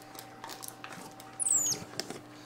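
A capuchin monkey gives one short, high squeak that falls in pitch, about one and a half seconds in, over faint rustling and clicking from a cardboard box being handled.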